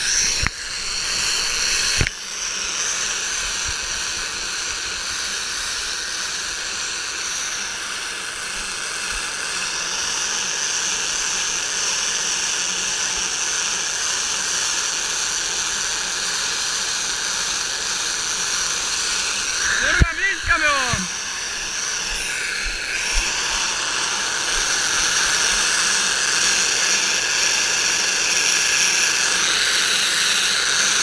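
Bale wrapper at work wrapping a round bale in plastic stretch film, heard from a camera riding on the machine: a steady hissing noise.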